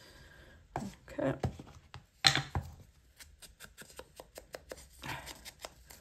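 A sharp click a little after two seconds in, then a run of quick light taps and scuffs as a foam ink blending tool is dabbed onto an ink pad and worked over the edge of a paper strip to ink it.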